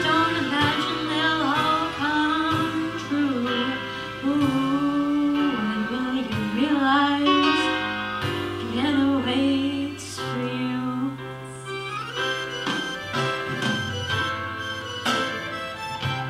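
A young female singer singing a song into a microphone through a PA, over instrumental accompaniment with held bass notes. Her voice drops out briefly about two-thirds of the way through while the accompaniment carries on.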